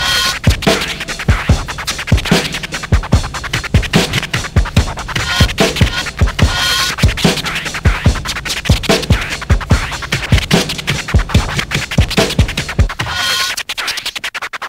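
Hip hop track with a DJ scratching a record on turntables over a fast, driving drum beat. Just before the end, the low drums drop out, leaving rapid stuttering strokes.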